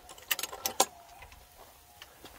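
A few sharp metallic clinks and rattles, bunched together in the first second, from a steel garden gate being pushed open and passed through.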